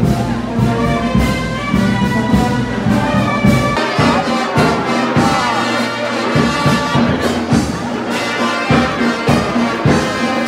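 Brass band playing a pasacalle march, trumpets and trombones over a steady beat. The bass thins out for a few seconds from about four seconds in.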